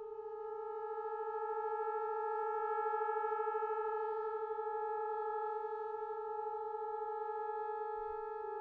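Three trombones, multi-tracked by one player, holding a long, steady chord at a slow tempo, swelling a little over the first few seconds and otherwise unchanged.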